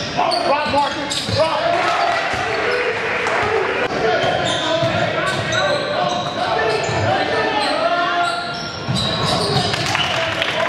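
Live game sound in a gymnasium: a basketball bouncing on the hardwood court with players and spectators calling out and talking, echoing in the large hall.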